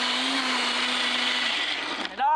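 Single-serve countertop blender running, a steady motor whine with a churning hiss as it blends a thick fruit smoothie, cutting off shortly before the end.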